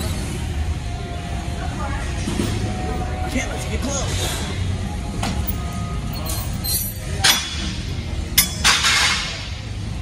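Weight stacks of a cable crossover machine clanking down, three sharp metal clanks in the last few seconds, over gym background music and chatter.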